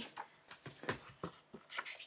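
Pages of a sewing book being turned and handled: a scatter of soft, faint paper rustles and flicks.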